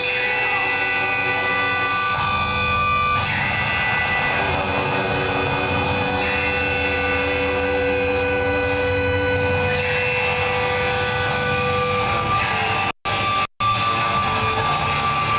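A live rock band's amplified electric guitars hold sustained, ringing notes that shift in pitch every few seconds, over a rumble of bass and drums. The sound cuts out twice for a split second near the end.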